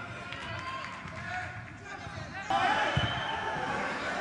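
Football match sound from the pitch: men's voices shouting and calling in a mostly empty stadium, with dull thumps of the ball being kicked. About two-thirds of the way in, the sound cuts abruptly to a louder stretch of pitch and crowd sound.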